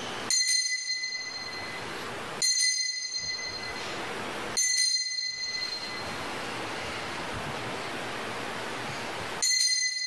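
Altar bell struck four times, each strike ringing out clearly and fading slowly, the last one near the end; rung at the elevation of the consecrated host.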